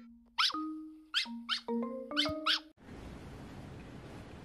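Cartoon intro jingle: held synth notes with about six sharp, quick squeaks laid over them. It cuts off suddenly near the end, leaving a steady low room hiss.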